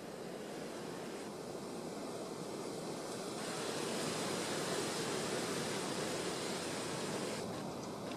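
Wind blowing as a steady rushing noise, with a gust swelling about halfway through and easing off near the end.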